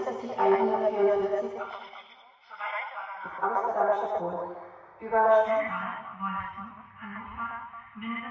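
Speech played through a simulated loudspeaker: a voice with a thin, narrow sound, lacking deep bass and the highest treble, starting suddenly out of silence.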